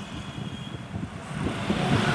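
Road and traffic noise from a vehicle riding along a busy street among cars and motorbikes: a steady rush with low rumble that swells near the end.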